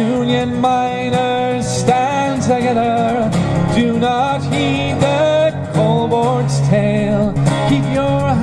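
A solo acoustic guitar in drop D tuning, capoed, playing an instrumental break between verses with a steady rhythm of picked and strummed notes.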